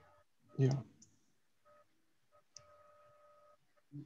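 A faint steady electronic tone that cuts in and out in short snatches, the longest lasting about a second, with a couple of tiny clicks, heard through a video-call connection after a brief spoken 'yeah'.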